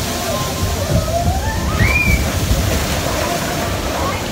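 Water rushing and sloshing around a log flume boat moving along its channel, a steady low rumble with splashing. A thin wavering voice-like tone glides upward over it around the middle.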